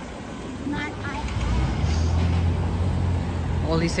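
Street traffic with a vehicle engine running close by: a low steady hum sets in about two seconds in over the general street noise.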